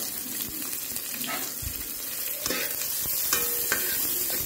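Sliced onions sizzling in hot oil in a metal pan, a steady hiss. In the second half a metal spatula scrapes and clicks against the pan a few times as they are stirred.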